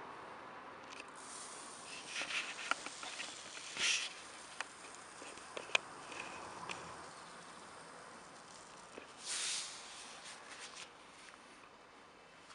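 Caustic soda poured from a plastic container into a plastic bottle of water: short hissing, rattling bursts of pouring, the longest about two, four and nine and a half seconds in, with sharp clicks of plastic being handled.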